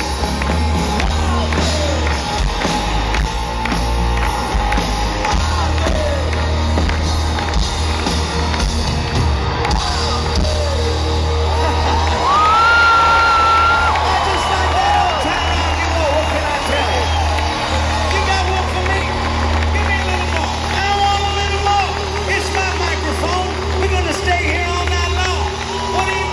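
Live rock band performing in a stadium, recorded from within the crowd: lead vocals over drums, bass, guitars and keyboards, with a steady heavy bass and a long held high note about twelve seconds in. The crowd cheers and whoops along.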